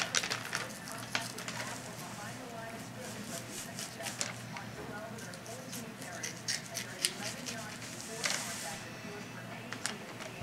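Knife cutting meat away from a raw deer hind quarter: a run of small wet crackles and clicks as the blade slices through meat and connective tissue, with a brief rustle a little after eight seconds in.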